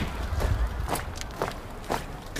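A large formation of People's Liberation Army honour guard soldiers marching in unison, their boots striking the stone pavement together as one sharp step about twice a second.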